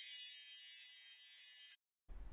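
A high, shimmering wind-chime sparkle sound effect, many thin tinkling tones fading slowly and then cutting off suddenly near the end.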